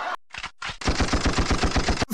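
A rapid burst of automatic gunfire sound effect, about ten sharp shots a second, starting just under a second in after a few brief clicks.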